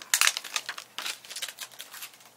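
Clear plastic stamp sheet crinkling and crackling in quick bursts as a clear stamp is peeled off it.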